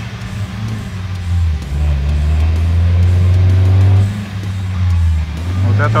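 UAZ Patriot SUV's engine running under load at fairly steady revs, dipping and rising a little, as the vehicle bogs down in viscous peat mud with its momentum lost. Background music plays underneath.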